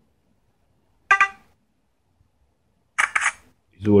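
Smartphone camera app sounds from the phone's small speaker: a short tone about a second in, then a click-like shutter sound about three seconds in.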